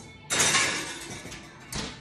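Oven door opening and a glass baking dish slid in onto the metal oven rack: a sudden scraping noise that fades over about a second, then a single sharp knock near the end as the door is shut.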